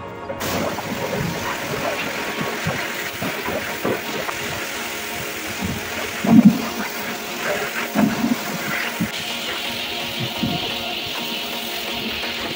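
Car-wash pressure lance hissing steadily as it sprays foam over a car; the spray starts abruptly and grows brighter near the end. Background music plays underneath.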